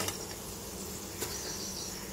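Potato pieces deep-frying in hot oil in an aluminium kadai, a steady sizzle, with the perforated steel skimmer clinking against the pan at the start and again about a second in.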